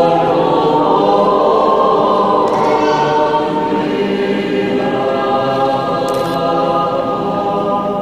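A choir singing slow, long-held notes, the chord shifting a few times.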